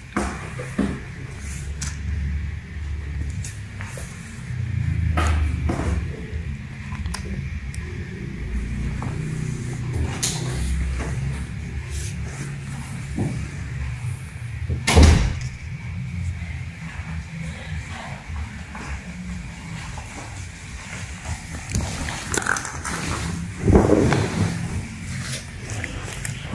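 Kittens scuffling in a plastic mesh basket: scattered scratches and light knocks against the plastic over a low rumble of handling noise, with one sharp knock about halfway through and a louder scuffle near the end.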